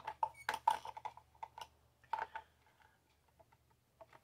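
Light clicks and taps of small metal tools, such as scissors, knocking against a hard plastic organizer as it is handled. They come in a quick irregular run that dies away after about two and a half seconds.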